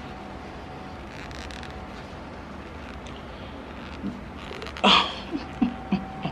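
Quiet room background with a faint steady tone and soft rustling of fabric as fingers work the buttons on a shirt dress. There is one brief louder sound about five seconds in, followed by a few small clicks.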